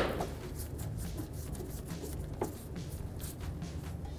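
Faint scattered ticks and creaks of a Phillips screwdriver turning a mounting screw into a car's fender well, with one sharper click about two and a half seconds in, over a low steady hum.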